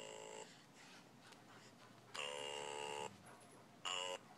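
Electronic baby toy playing short, buzzy synthesized tones at a fixed pitch: one brief note at the start, a longer one of nearly a second about two seconds in, and another starting near the end.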